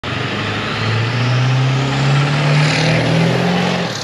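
Ford Excursion's 7.3-litre Power Stroke turbo-diesel V8 accelerating past on the road, its note rising steadily, with tyre and road noise. The engine note drops away near the end.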